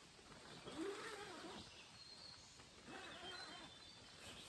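Two short, low vocal sounds about two seconds apart, each rising and then falling in pitch, with faint high chirps in the background.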